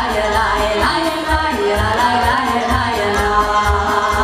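Live Romanian folk song sung by two women through a PA system, over electronic keyboard accompaniment with a recurring low bass beat.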